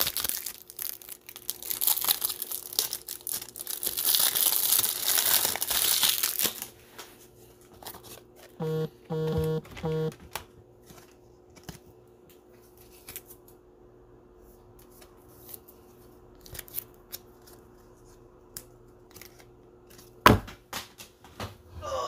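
Plastic wrapping on a pack of card top loaders being torn open and crinkled, a loud dense crackle lasting about six seconds. Around nine seconds in comes a short pulsing buzz, then quieter scattered clicks of handling and a sharp knock near the end.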